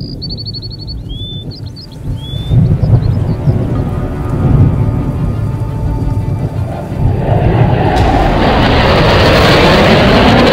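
Produced intro soundscape: a few bird chirps fade in the first two seconds under a deep rumble like thunder. The rumble grows louder, and from about seven seconds in a loud rushing noise builds, like an approaching jet.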